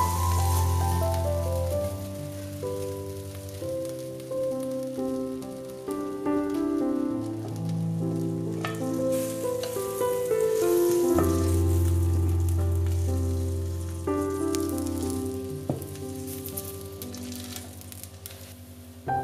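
Instrumental background music over a steady sizzle of tomato cake batter frying in a covered frying pan.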